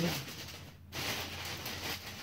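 Rustling handling noise from the toys being picked through, dipping briefly and picking up again about a second in.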